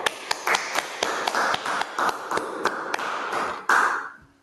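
A small group applauding, many irregular claps with a louder burst near the end.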